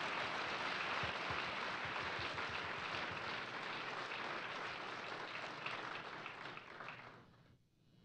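Audience applauding, a steady patter of many hands that fades and stops about seven seconds in.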